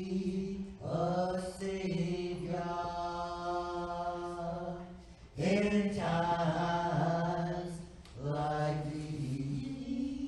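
Church special music: singing with long held notes, in phrases that start about a second in, about five seconds in and about eight seconds in.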